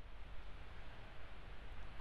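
Faint steady outdoor background noise: a low rumble under a soft hiss, with no distinct events.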